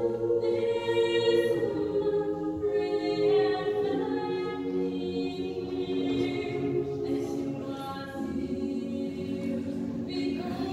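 Mixed choir of men and women singing a cappella, holding slow sustained chords that move to a new chord every second or two.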